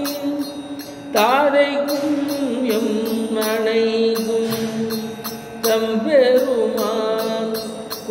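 A man singing a Tamil devotional song into a microphone, drawing out long held notes that slide in pitch. New phrases start a little after one second in and again near six seconds.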